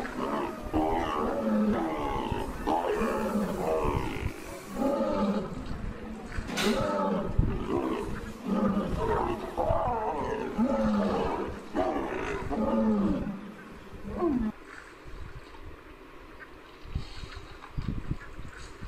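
A lion's roars and growls, a run of drawn-out calls one after another, each falling in pitch, with a single sharp click about six and a half seconds in. The calls stop about fourteen seconds in.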